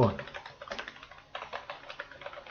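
Computer keyboard typing: a quick, irregular run of key clicks as a stock name is typed into a search box.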